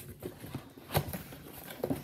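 Cardboard shipping box being handled as its end flap is pulled open, with light rustling and scraping and one sharp snap about halfway through.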